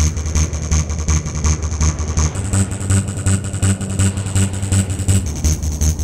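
Electronic dance music, trance or techno, with a steady driving beat, a crisp high tick on each beat and a deep bass line.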